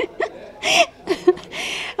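Short, breathy laughing sounds and gasps from a person, broken up by brief vocal fragments, with a half-second breathy exhale near the end.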